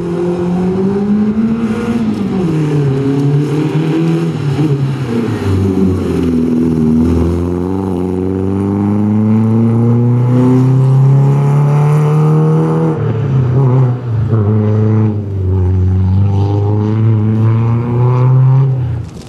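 Renault Clio Sport rally car's engine revving hard under full acceleration. The pitch climbs, falls back and climbs again several times as it shifts gears and lifts off for corners.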